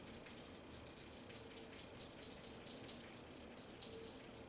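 Light, irregular metallic jingling and clicking of small metal pieces, with a thin high ring over the clicks and no steady rhythm.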